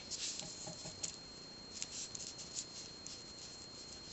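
Faint clicks and rustles of 1 cm pearl beads knocking together as thin metal wire is pulled tight through them, a scatter of small light ticks.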